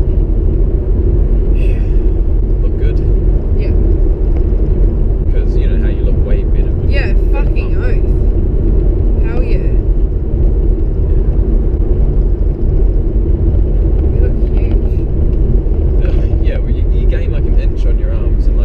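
Car driving, with a steady low road rumble throughout and faint, unclear voices over it.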